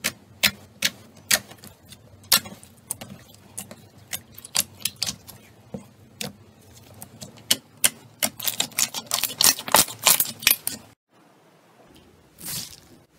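Fingers pressing and poking into blue glitter slime, making sharp pops and clicks of trapped air, a few a second at first and much faster near the end before stopping abruptly.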